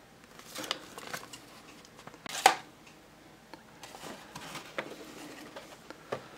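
Paper instruction sheet and cardboard toy box being handled: a few short rustles and scrapes, the loudest about two and a half seconds in.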